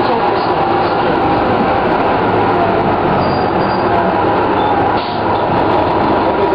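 Detroit Diesel Series 50 engine and drivetrain of a 1997 Orion V transit bus running under way, a steady loud mechanical noise with a brief dip in level about five seconds in. The owner says the turbocharger is slightly overblown.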